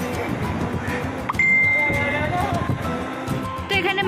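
A click, then a single steady high-pitched electronic beep lasting under a second, over a busy background of voices and music.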